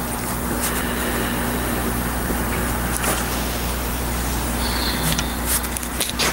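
Steady low electrical hum with a hiss over it, the background noise of an old courtroom video recording, with a few faint clicks and no speech.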